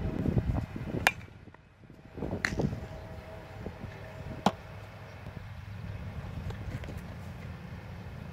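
Three sharp knocks of a baseball striking, about a second and a half to two seconds apart, over a steady low background hum.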